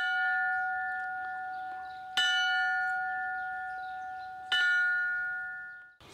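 Brass memorial bell struck three times by its clapper lanyard, slowly tolled in remembrance of the fallen. The first strike comes at the start, the next about two seconds later, and the last about four and a half seconds in. Each strike rings on with the same clear tones, slowly fading.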